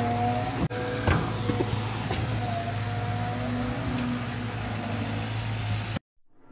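Excavator's diesel engine running with a steady low hum, and a faint whine that comes and goes twice. A short knock about a second in.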